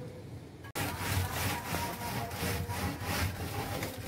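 Wooden straightedge scraped up and down over fresh cement render to level it, a quick run of about three rasping strokes a second that starts abruptly just under a second in.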